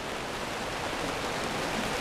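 Steady, even hiss of background noise, with no other sound.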